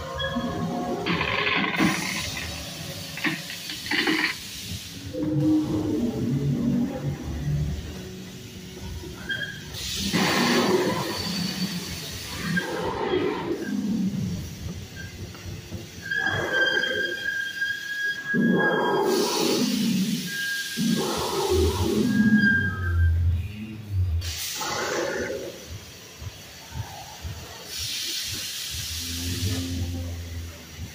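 Dinosaur attraction soundtrack played over loudspeakers: music mixed with recorded dinosaur roars and growls that come in repeated loud swells.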